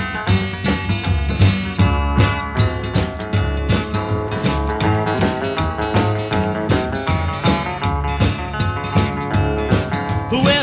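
Instrumental break of a 1958 rockabilly record: guitar played over a steady beat, with no vocals.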